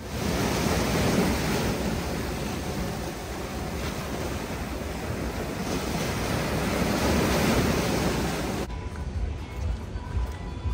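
Rough sea surf breaking and washing, with wind on the microphone, the noise swelling louder twice; it cuts off suddenly near the end.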